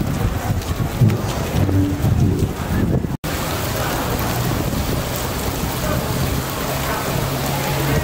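Outdoor crowd ambience: people chattering over a steady hiss of outdoor noise, with a brief dropout about three seconds in.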